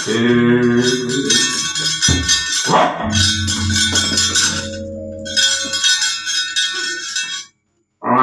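Javanese gamelan playing, with bronze metallophones and gongs ringing and two sharp struck notes about two seconds in. The sound cuts off abruptly just before the end.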